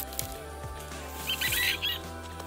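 Background music with steady held tones. A short, bright burst of sound about halfway through is the loudest moment.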